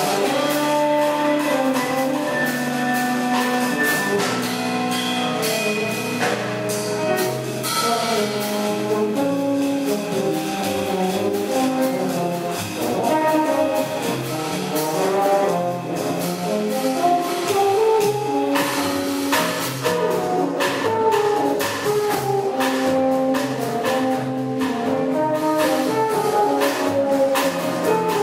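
Live jazz quartet: French horn playing a melody line of held and moving notes over piano, double bass and drum kit. The drums and cymbals grow busier in the second half.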